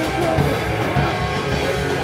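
Live rock band playing, electric guitar over a driving drum kit.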